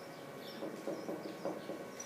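Marker pen squeaking on a whiteboard in a quick run of short strokes as letters are written, over a faint steady hum.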